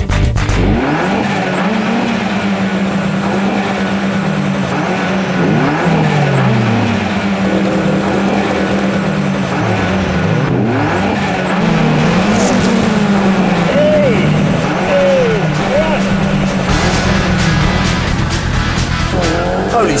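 Several tuned cars' engines revving on a drag-race start line, their pitch held high and repeatedly dropping and climbing again.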